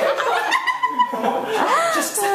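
People laughing and chuckling, mixed with a few spoken sounds.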